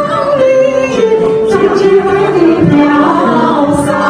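Women's choir singing a Chinese song in unison, holding long melodic notes.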